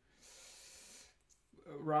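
A man drawing a short breath in, a soft hiss lasting just under a second, with his speech starting again near the end.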